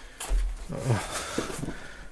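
A person sitting down at a desk: a low thump about a third of a second in, then several short sounds that fall in pitch as he settles into the seat.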